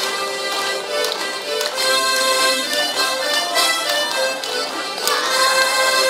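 Harmonica ensemble playing a tune together in sustained reedy chords, with a few sharp taps now and then.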